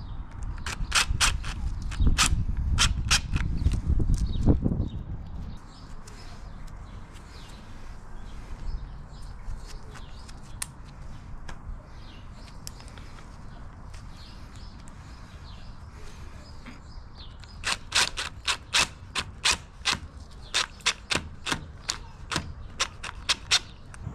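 A cordless impact driver drives screws through cable cleats into a pebbledash-rendered wall. There are two runs of sharp, rapid clicks, one over a low rumble in the first few seconds and another in the last few seconds, with a quieter stretch between.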